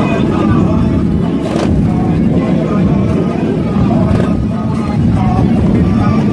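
Several large cruiser motorcycle engines running together with a steady, loud low rumble, over the talk of a crowd.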